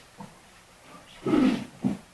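A short non-word vocal sound from a person, about a second and a half in, followed by a brief second blip, over low room noise in a pause of the preaching.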